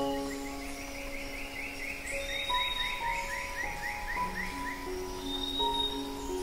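Slow, calm acoustic guitar instrumental: a chord at the start, then single notes left to ring. A quick run of high chirps, about five a second, sounds over roughly the first half.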